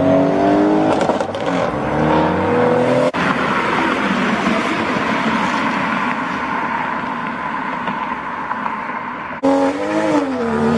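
Audi RS6 Avant's engine pulling away, its pitch rising. After a cut about three seconds in, a second car accelerates away with a rougher, noisier sound. Another cut just before the end brings in a BMW 2 Series coupe's engine revving unevenly as it pulls off.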